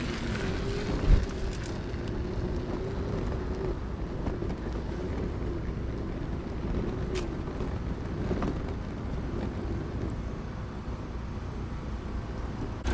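Wind rushing over the microphone and bicycle tyres rolling on asphalt while a bike is ridden, with a faint wavering hum underneath and a single knock about a second in.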